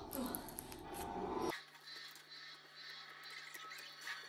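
Foam-bead slime being pressed and kneaded with fingertips, the beads giving a fine, crisp crackling. Background music plays for about the first second and a half, then drops out, leaving the crackling on its own.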